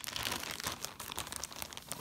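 Clear plastic bag crinkling and rustling in quick, irregular crackles as the fabric inside it is handled and shifted.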